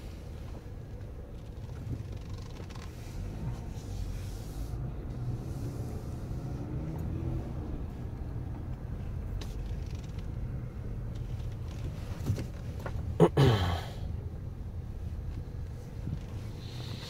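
Dodge Grand Caravan minivan driving slowly, heard from inside the cabin: a steady low engine-and-road rumble. About thirteen seconds in, a short loud sound falls in pitch.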